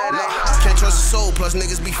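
Hip hop track with rapped vocals over the beat; the deep bass drops out briefly at the start and comes back in about half a second in.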